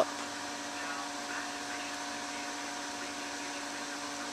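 Steady mechanical hum with a few fixed tones held over a low background hiss, unchanging throughout.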